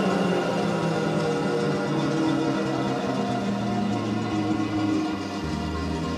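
Instrumental music: sustained, held chords with no singing, and a deeper bass note coming in near the end.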